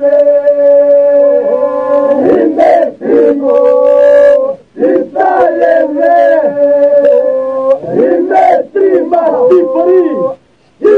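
A group of men singing a Lab Albanian polyphonic song: a low drone holds steady under higher solo voices that waver and ornament. The phrases break off briefly a few times, the longest break about four and a half seconds in.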